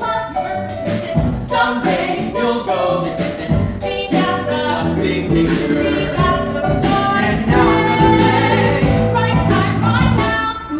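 A male and a female voice singing a musical-theatre song, accompanied by keyboard and drum kit, with regular drum hits running through it.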